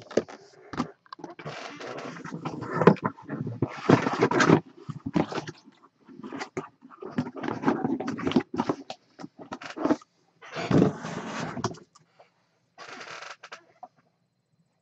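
Handling noise: a run of irregular scrapes and rustles as the plastic display cube of a mini football helmet and other items are moved about the table, with a last short scrape near the end.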